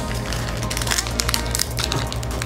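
Foil booster-pack wrapper crinkling with sharp crackles as it is torn open and the cards are pulled out, over background music.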